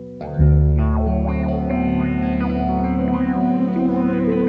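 Instrumental progressive rock: electric guitar through effects over bass guitar, the full band coming in loudly about half a second in.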